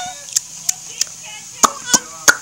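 A baby babbling and squealing in short high-pitched sounds, with about five sharp taps or knocks scattered through, the loudest near the end.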